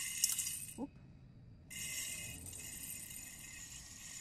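Dry jasmine rice grains poured from a cup into the stainless steel hopper of a grain grinder attachment, a steady hiss of falling grains. It comes in two pours with a short break about a second in.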